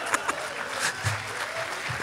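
Live audience applauding, with the last pulses of a man's hearty laughter at the very start.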